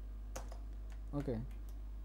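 Computer keyboard keys tapped a few times: short separate clicks, over a steady low electrical hum.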